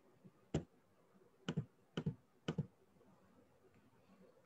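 Four short, soft clicks: a single one about half a second in, then three doubled clicks about half a second apart, over faint room tone.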